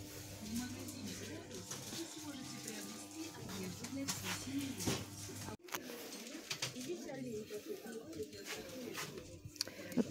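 Faint shop ambience: distant voices and background music, with scattered light clicks and rustles from handling. The sound cuts out for an instant about halfway through.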